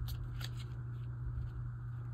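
Clear plastic blister pack being handled and turned over: a few faint light clicks of the plastic, mostly in the first half second, over a steady low hum.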